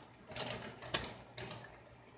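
Plastic zip-top bag of beeswax pellets crinkling and rustling as it is handled, in a few short crackles about half a second apart.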